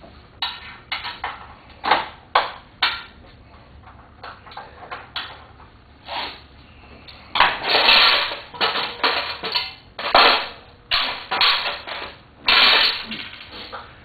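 Clicks, scrapes and rattles of an L-shaped pick working the metal hardware inside a stripped car door. The sounds are scattered at first and come thicker and louder about halfway through.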